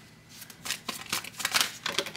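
A tarot deck being shuffled by hand: a quick run of crisp card-edge snaps and slaps that starts about half a second in and grows busier toward the end.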